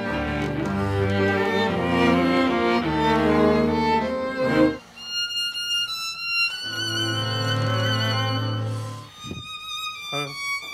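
An orchestra's strings, led by violins, playing a passage with a full ensemble sound. Just before halfway it breaks off suddenly and gives way to quieter held notes: a high violin line with vibrato over a low sustained note.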